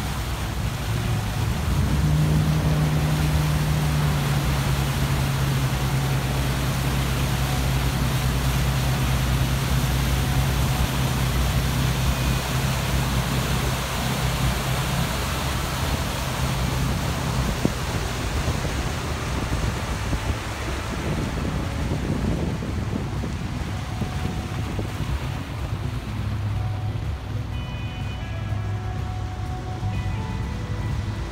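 Motorboat under way: a steady low engine hum over rushing water from the wake, with wind buffeting the microphone. The hum drops away about two-thirds of the way through, leaving water and wind noise.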